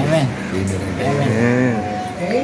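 People's voices: talk and drawn-out vocal sounds that run into each other, with no clear words.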